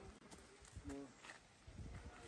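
Faint scattered taps and steps of hikers with trekking poles on a rocky, leaf-covered trail, with a short murmured syllable from a person about a second in.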